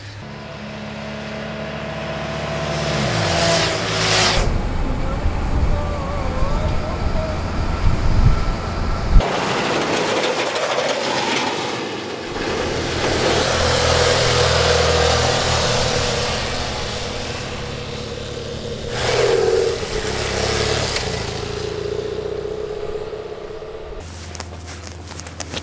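Road vehicle engines and traffic in a series of cuts. A vehicle passes with a falling engine pitch about three seconds in, and a truck passes in a long swell of engine and road noise in the middle, with more engine running after it.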